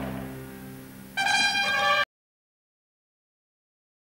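A fading tail of sound, then about a second in a short, bright musical sting, a chord whose notes shift partway through. It cuts off suddenly into silence.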